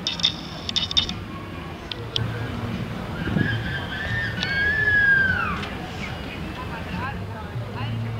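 Outdoor street ambience with indistinct background voices, a few light clicks near the start, and a high tone that falls in pitch about five seconds in.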